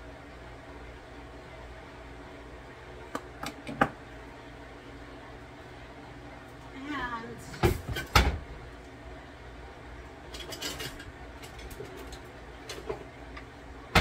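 Scattered kitchen clunks and clicks from objects being handled and set down, with two loud knocks about eight seconds in and a quick run of clicks a little later, over a steady low hum.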